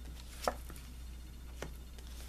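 Tarot cards being handled: a card is drawn from the deck and laid on the table, giving a few short sharp clicks and taps, the loudest about half a second in, over a low steady hum.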